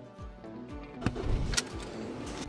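Background music, with a short burst of car noise about a second in: a click, a low rumble and a second click.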